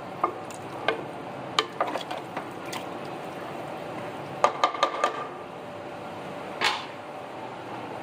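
A metal spoon stirring a watery mix of beef, tomatoes and onions in a cooking pot, with scattered scrapes and clinks against the pot, most frequent about four and a half to five seconds in, over a steady hiss.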